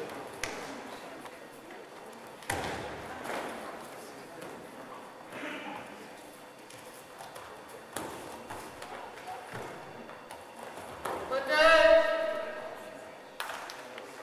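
Sounds of a randori match in a large echoing gym: a few sharp thumps of feet and bodies hitting the mat, one of them during a throw about eight seconds in, over a murmur of voices in the hall. Near the end comes a loud drawn-out shout.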